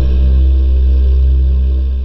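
Cinematic logo-intro sound design: a deep, loud bass drone that hits suddenly and holds steady, easing off near the end.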